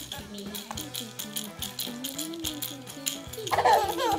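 A rattle shaken in quick, repeated strokes over a simple tune, with a baby's laugh breaking out near the end.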